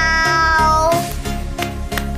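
A child's voice holds one long, steady sung note on the word "now" over a karaoke backing track. The note ends about halfway through, and the backing track carries on with a steady beat.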